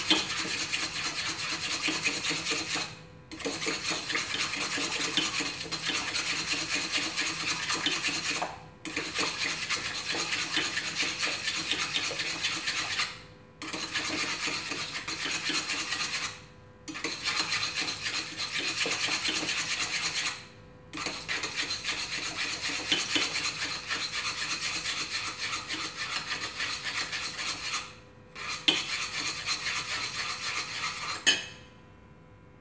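Chopsticks scraping around the bottom of a stainless steel pot as a milk-and-flour ice cream base is stirred over low heat to thicken it. The rasping is continuous, broken by about six brief pauses.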